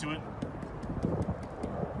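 Hand tapping on the woven webbing seat of a wooden rocking chair, a quick run of short, dull, drum-like taps. The sound shows how taut the webbing is strung, kind of like a drum head.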